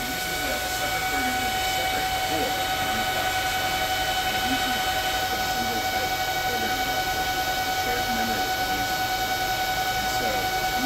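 Air-cooled Desiwe K10 Pro Bitcoin ASIC miner running and hashing, its cooling fans at high speed: a loud, steady rush of air with a constant whine.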